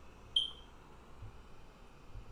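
A single short, high beep that fades quickly, about a third of a second in, over a faint low hum.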